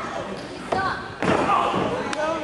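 Two thuds on the wrestling ring, about half a second apart a little before halfway, among short shouting voices.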